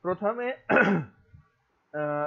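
A person clearing their throat once: a short voiced sound followed by a harsher rasp, over in about a second.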